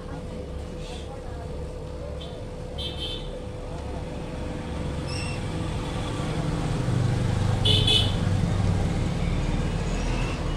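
Road traffic rumbling steadily, swelling as a vehicle passes closer between about six and nine seconds in. Brief high-pitched sounds come now and then over a faint steady hum.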